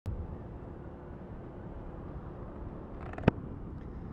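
A Honda Wave 125's small single-cylinder four-stroke engine running steadily under way, mixed with road and wind rumble. A single sharp knock about three seconds in.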